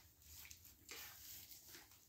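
Near silence, with faint soft rustling as a cardboard firework cake box is handled.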